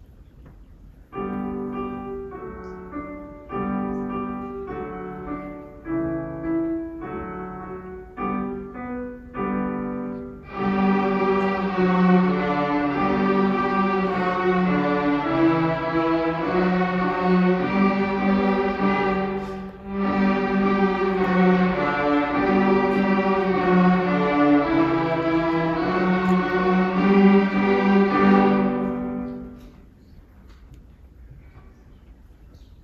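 A beginning school string orchestra of violins, violas and cellos, with piano, playing a simple tune. It opens with separate short notes for about ten seconds, then fuller sustained playing takes over, with a short break partway through, and it ends just before the close.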